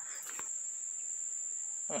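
Steady, high-pitched insect buzz holding one unbroken tone, with a single faint click shortly after the start.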